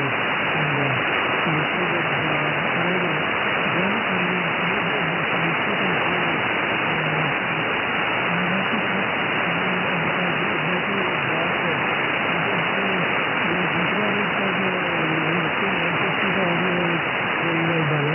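Shortwave receiver audio from a RadioBerry 2 SDR tuned to 14.21 MHz on the 20-metre amateur band: steady static hiss with a weak single-sideband voice talking through it.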